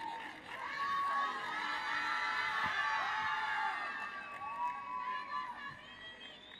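Audience cheering and screaming, with many high-pitched voices overlapping, easing off toward the end.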